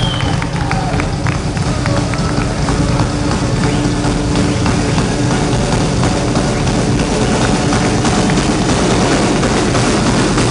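Live metal band playing at full volume: dense, heavy guitars and bass with fast drumming, heard from within the crowd. A single whistle from the audience sounds right at the start.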